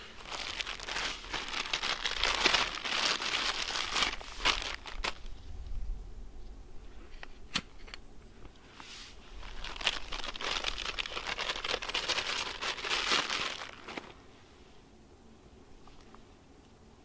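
Crinkling, rustling handling noise in two long spells, with a few sharp clicks in between, as gear is handled around a small aluminium alcohol stove.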